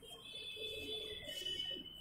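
Chalk drawing arrowheads on a blackboard, giving a faint, steady high-pitched squeak that fades near the end.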